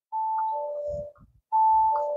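Bentley Bentayga's door-open warning chime: a two-note high-then-low chime, repeating about every second and a half, set off by the driver's door being opened. A few soft low knocks come just after one second in.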